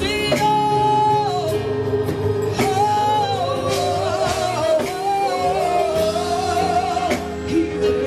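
Gospel praise team singing into microphones, long held and sliding vocal lines over live band accompaniment with drums and cymbals.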